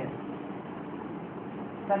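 Steady background noise with a faint low hum, in a pause between a man's words.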